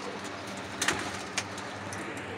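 Young pigeons cooing in a low, steady drone. Two sharp clicks cut in, the louder one a little before the middle and another past it.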